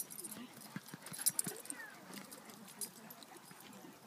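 Dogs running about on packed dirt, their footfalls heard as a scatter of short, irregular thuds and scuffs, with faint voices in the background.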